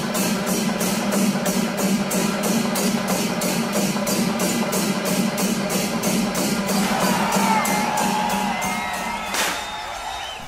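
Festival percussion music with an even beat of cymbal strikes about three a second over a steady low drone, mixed with a cheering crowd; a few wavering high calls rise over it near the end before the music fades.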